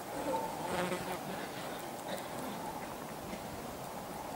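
Buzzing of flying insects' wings, a steady hum that swells slightly in the first second.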